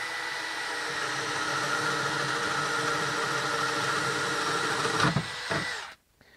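DeWalt 12V cordless drill in low gear (speed one), driving a one-inch spade bit through a wooden board under steady load with a continuous motor whine. About five seconds in, the sound changes as the bit finishes the hole, and the motor stops just before the end.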